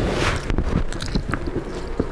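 Close-miked eating of Indomie instant noodles: a short slurp at the start, then chewing with many small wet mouth clicks.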